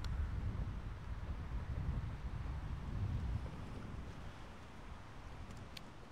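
Wind buffeting the microphone: a low rumble, steady with small gusts, easing a little near the end.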